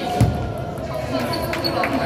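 A table tennis rally on a wooden sports-hall floor: a heavy thump of a player's foot landing about a quarter second in, then short sharp ticks of the celluloid ball off paddle and table in the second half, all in the echo of a large hall.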